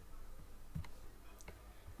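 Two faint computer mouse clicks, under a second apart, over quiet room tone.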